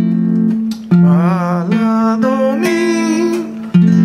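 Nylon-string classical guitar strumming an F major seventh chord: a sustained chord, struck again about a second in and once more near the end. A wavering hummed voice line runs over it in the middle.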